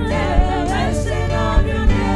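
Live gospel song: a woman singing lead into a handheld microphone, her pitch sliding and wavering, over steady sustained backing with three low beats.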